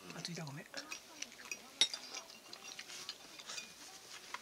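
A metal fork clinking and scraping against a plate while eating, with many small irregular clicks and one sharper clink just under two seconds in.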